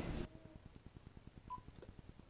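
Faint phone-line sound: a low, evenly pulsing buzz with one short, high beep about one and a half seconds in, as from a phone held to the ear during a call. A sung voice cuts off at the very start.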